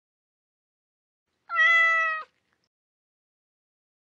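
A single cat meow, one pitched call a little under a second long that falls slightly in pitch, slowed down.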